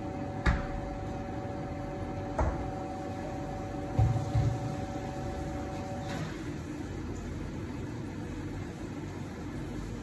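Victoria Arduino Black Eagle Gravitech espresso machine humming steadily while a shot pulls, cutting off with a soft click about six seconds in as the shot ends. A few short knocks and clatters of dishes are heard, over a steady background hum.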